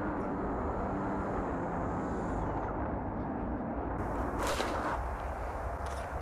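Steady low rumble of wind on the microphone, with the faint high whine of the small twin electric motors of an RC plane fading out in the first half as it glides in to land. About four and a half seconds in comes a brief rush of noise.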